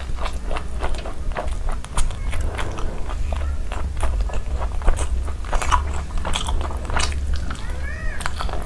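Close-miked biting and chewing of a sauce-coated chicken piece: a dense, irregular run of quick mouth clicks and smacks over a steady low hum.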